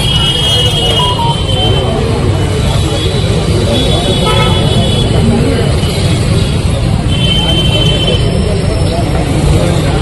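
Steady road-traffic rumble with vehicle horns tooting three times, each toot held for a second or more, over faint background chatter.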